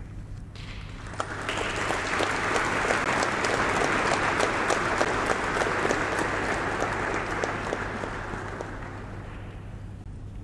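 Audience applauding: the clapping starts about a second in, builds to a steady level, then fades away near the end.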